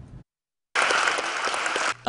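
Crowd in bleachers applauding, cutting in abruptly under a second in after a brief stretch of dead silence.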